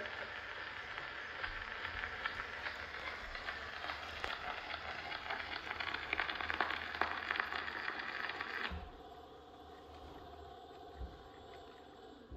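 Edison Triumph phonograph playing out the end of a 4-minute cylinder record after the song: steady crackling surface noise from the reproducer, which cuts off suddenly about nine seconds in and leaves a faint background with a single click near the end.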